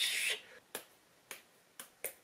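A short breathy hiss, then three sharp clicks about half a second apart, made by hand.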